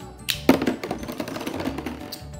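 Plastic Lego Ninjago Spinjitsu spinning tops in a plastic battle arena: a sharp clack about half a second in as the second top lands, then a fast, continuous rattle of clicks as the tops spin against the arena floor and knock into each other.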